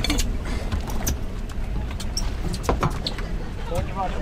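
Steady low rumble of wind and sea around a boat on open water, with a few scattered clicks.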